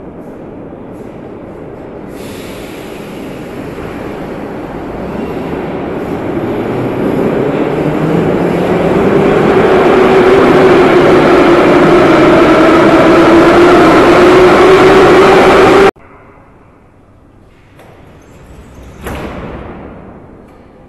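Moscow metro train in the station: its running noise and motor whine build steadily for about ten seconds, then hold loud. The sound cuts off abruptly near the end.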